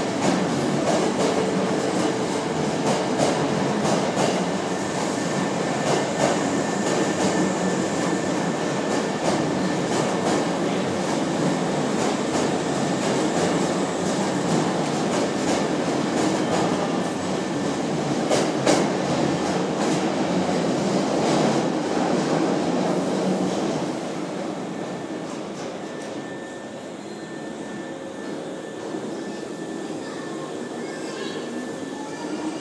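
Hankyu 5300-series electric train running along an underground station platform: the rumble of its wheels and running gear with clicks over the rail joints, echoing off the station walls. It grows quieter for the last few seconds as the train slows.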